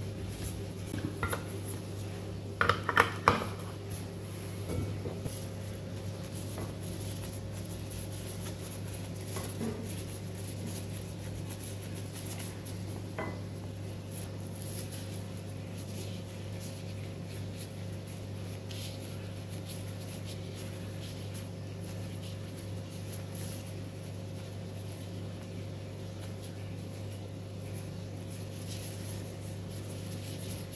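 Dishes clinking and knocking a few times in the first seconds, loudest about three seconds in, over a steady low hum.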